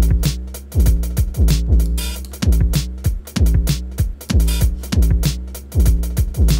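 Electronic drum beat from Reason's Drum Sequencer at 96 BPM, playing an uneven, wonky pattern. Deep kick drums whose pitch drops sharply on each hit are mixed with fast closed hi-hat ticks.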